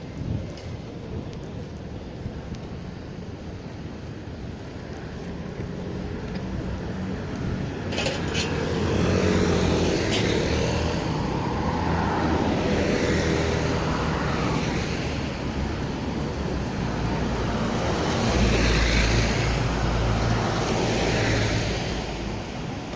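Road traffic passing close by, engine and tyre noise that swells about a third of the way in and stays loud, with a deep low rumble near the end.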